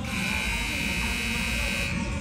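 Gym buzzer horn sounding one steady, harsh buzz of about two seconds that stops just before the end, over the low rumble of the arena.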